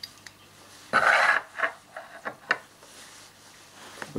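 Small metal clicks and taps from handling the drop-out magazine of an Umarex P08 Luger CO2 BB pistol, with a short burst of rustling noise about a second in.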